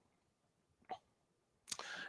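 Near silence, broken by one short faint mouth click about a second in and, near the end, a man's sharp intake of breath through the lectern microphone.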